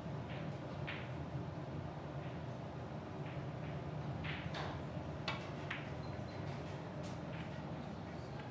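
Steady low hum of a quiet playing hall with a scattering of short, sharp clicks, the clearest about five seconds in: cue tip on ball and balls knocking together during a heyball (Chinese eight-ball) shot.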